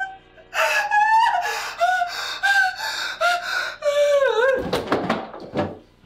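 A high-pitched voice crying out in short bursts that bend up and down in pitch, turning into a harsh rasping burst about four and a half seconds in that cuts off suddenly just before the end.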